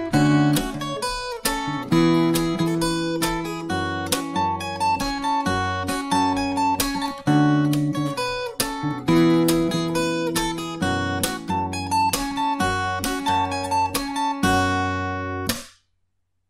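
Steel-string electro-acoustic guitar played fingerstyle: a melody with ringing notes over a bass line. The playing stops suddenly just before the end.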